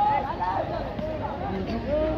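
Several voices calling and shouting over one another, with no clear words.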